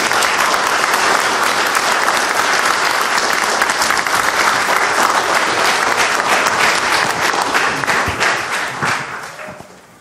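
Audience applauding with steady, dense clapping that fades out over the last second or so.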